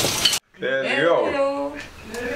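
A wooden spoon stirring thick rice pudding in a pot cuts off abruptly. After a moment's silence comes a person's drawn-out voice that rises and falls, then holds one long note that fades away.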